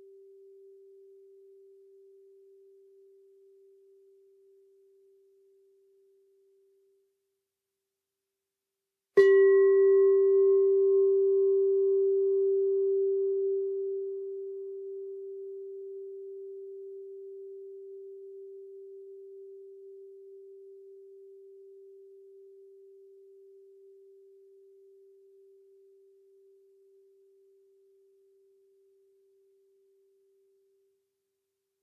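Singing bowl struck once about nine seconds in, ringing with a clear low tone and fainter higher overtones that die away slowly over about twenty seconds. Before the strike, the last of an earlier ring fades out.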